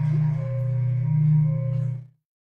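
A loud, steady low drone of a few held tones, with a fainter higher tone swelling on and off about every half second. It cuts off suddenly at the very end.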